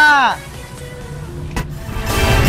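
A voice holding out the last syllable of a spoken farewell, long and steady, then falling in pitch and stopping about a third of a second in. After it comes a quieter background with faint steady tones and a short click just before the end.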